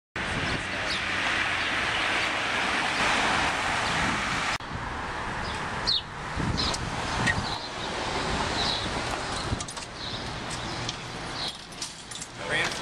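Outdoor street ambience: a steady rush of road and traffic noise that cuts off abruptly about four and a half seconds in, followed by quieter street ambience with a few short bird chirps.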